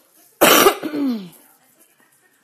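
A woman coughing once, loudly, about half a second in: a harsh burst that trails off into a falling voiced sound.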